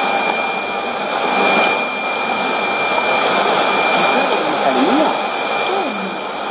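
Weak shortwave AM broadcast of Voice of Nigeria's Swahili service on 11770 kHz, played through a Sony ICF-2001D receiver. A faint voice is buried under heavy hiss and static, with a steady high whistle over it.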